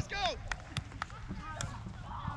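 A brief shout of "Let's go" at the start, then open-field ambience with a steady low rumble and faint distant voices, broken by four sharp clicks.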